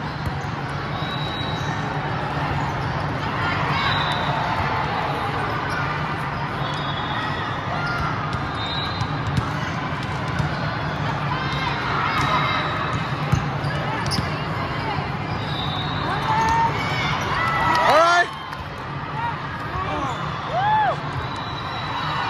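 A volleyball rally in a large hall: sharp hits of the ball and short squeaks of court shoes over a steady din of voices from spectators and neighbouring courts. A loud shout comes about eighteen seconds in.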